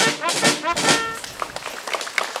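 Brass band of saxophones, trumpets and sousaphone playing short, repeated chords, stopping about a second in, followed by a low murmur of voices.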